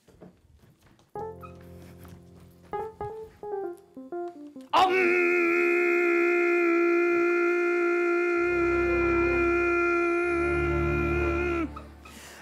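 Roland FP-4 digital piano playing a short run of single notes. Then, about five seconds in, a performer chants one long, steady "Om" that lasts about seven seconds, with low keyboard notes underneath in its second half.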